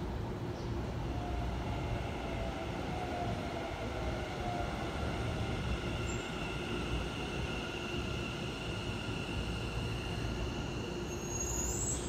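A Keikyu 1000 series electric train pulling into the platform at slow speed: a steady rumble of wheels on rail with a motor whine in several tones, and a high squeal of wheels or brakes rising near the end as it comes in.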